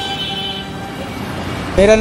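Road traffic noise with a held high tone that stops about half a second in, then a man starts speaking near the end.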